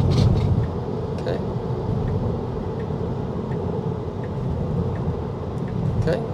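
Steady road and tyre noise inside a Tesla Model 3's cabin at highway speed: an even low rumble.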